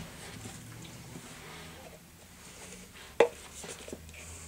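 Quiet rustling and handling noise as a plastic fountain-drink cup is fetched and picked up, with one sharp knock about three seconds in.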